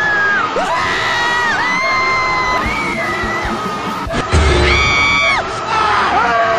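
A run of long, high-pitched screams, each held for about a second before sliding off in pitch, spliced one after another. A brief low thump comes about four seconds in.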